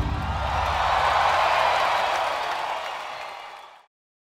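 Concert crowd applauding and cheering as a live rock song ends, with a low sustained note from the band dying away underneath. The crowd noise fades out near the end.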